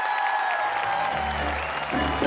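Audience applauding, with background music coming in about a second in on low bass notes.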